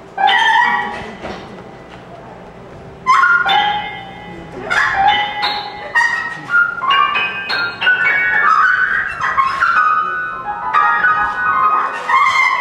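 Improvised jazz duo of trumpet and grand piano: a loud trumpet note right at the start that fades away, then from about three seconds in a busy, unbroken run of trumpet phrases over the piano.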